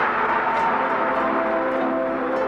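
Background music of several sustained, ringing tones held steady over an even rushing noise.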